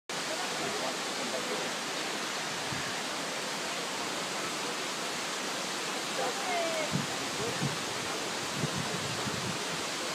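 A steady, even rushing noise, like running water, with faint voices in the background from about six seconds in.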